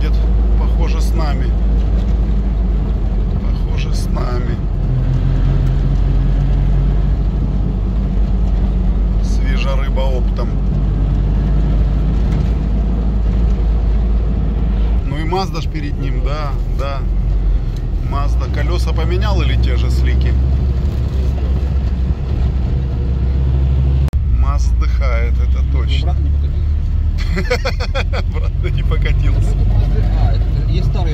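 Cabin noise inside a modified UAZ Patriot on the move: a loud, steady low drone of engine and tyres on the road, which shifts in pitch about halfway through.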